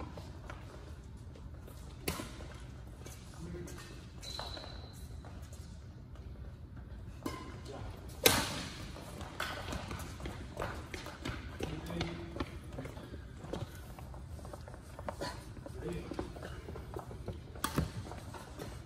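Sharp cracks of badminton rackets striking shuttlecocks, a few scattered strokes with the loudest about eight seconds in, echoing in a large sports hall. A brief shoe squeak on the court floor about four seconds in, over faint distant voices.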